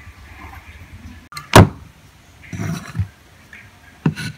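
A loud, sharp knock about a second and a half in, then a short scraping rustle and a second, lighter knock near three seconds.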